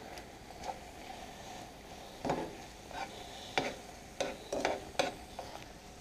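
Metal tongs tossing sauced zucchini noodles in a nonstick frying pan, giving scattered short clicks and scrapes against the pan over a faint sizzle.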